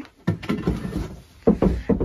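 A wooden stool being moved, knocking and scraping on a concrete floor, with the sharpest knock about one and a half seconds in.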